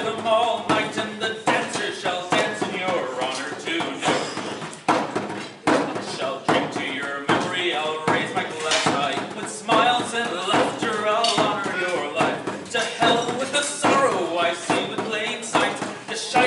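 A man singing a slow ballad to his own accompaniment on a bodhrán-style frame drum, beaten in a steady rhythm of single strokes under the voice.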